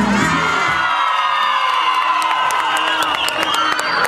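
A crowd of children shouting and cheering, with scattered hand claps in the second half. Music with a low beat stops about a second in.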